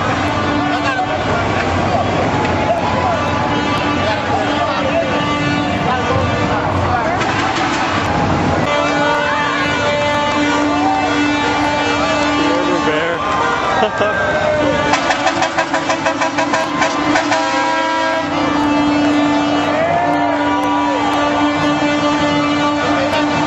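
Street crowd voices mixed with the engines of slow-moving motorcade vehicles, with a steady drone through most of it. A rapid, even pulsing sound runs for a few seconds past the middle, and a short laugh comes about two-thirds of the way in.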